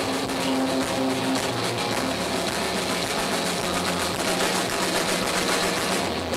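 Heavy rock band playing live at full volume: distorted electric guitars and bass over fast, even drumming, a dense wall of sound with no break.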